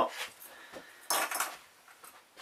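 A short clatter about a second in, lasting about half a second, as a small clip is taken off the bicycle frame and handled.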